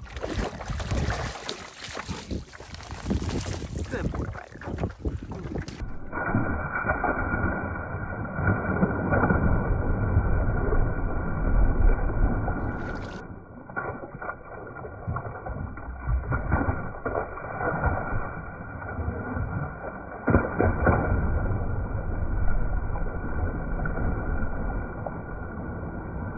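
Lake water splashing and sloshing around a swimming Australian Shepherd, close to a camera at the water's surface, with a heavy low rumble of water against the microphone. The sound turns muffled and dull about six seconds in.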